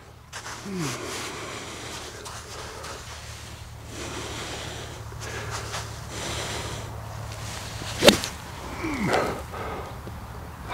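Golf club striking through wet bunker sand on a bunker shot: one sharp thud of impact about eight seconds in.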